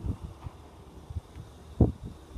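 Kia Sorento front door being pulled open, one short dull thump near the end as the latch releases and the door unseals, over light wind noise on the microphone.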